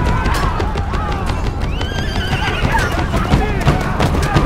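Battle sound mix from a film: men shouting and screaming over a dense low rumble, with a horse whinnying midway and score music underneath.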